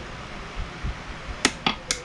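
A small metal measuring spoon clinking three times in quick succession, about a second and a half in, while glitter flake is scooped out for plastisol, over a steady fan-like hiss.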